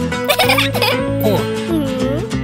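A cartoon character's wordless voice babbling and quickly sliding up and down in pitch, in two short bursts, over background music.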